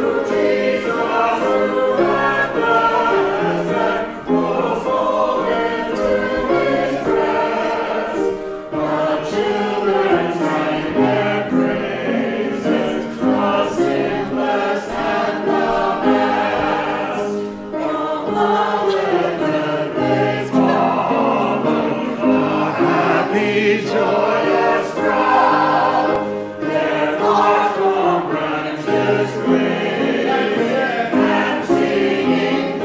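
Choir and congregation singing a hymn together with keyboard accompaniment, phrase after phrase with short breaks for breath between them.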